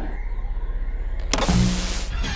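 Sound effects: a low rumble pulsing rapidly, about ten times a second, then a loud burst of hiss like TV static with a low hum, about a second and a half in.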